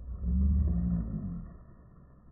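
Wild boar giving one deep growl, just over a second long, that fades away.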